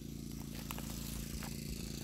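Greenworks 20-inch 12-amp corded electric lawn mower running steadily, its motor giving a constant low hum with a few faint ticks.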